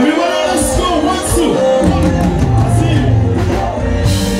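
Live band music with a male singer; the bass is absent for roughly the first two seconds, then comes back in and carries on under the tune.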